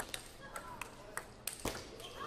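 Celluloid/plastic table tennis ball struck back and forth in a rally, a quick irregular run of sharp ticks off rackets and table, with a louder hit about one and a half seconds in.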